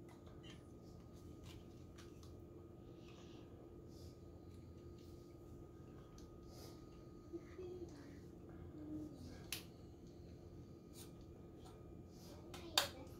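Faint plastic clicks and taps from a drone's handheld remote controller as its fold-out antennas and phone clamp are handled, over a faint steady hum in a quiet room; the clearest click comes near the end.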